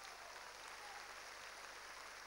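Faint, steady applause from an audience, a dense patter of many hands clapping.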